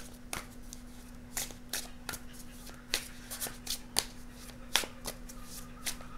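A deck of tarot cards being hand-shuffled overhand: a steady run of short soft clicks as packets of cards drop onto the deck, about three a second, over a faint steady low hum.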